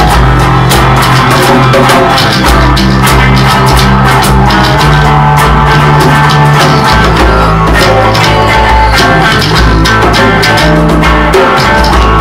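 Loud rock jam: electric guitar over a steady beat of percussion hits and held bass notes, playing on without a break.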